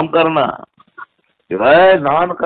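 A man's voice over a telephone line, heard in two bursts with a pause of about a second between them, the second raised and rising in pitch.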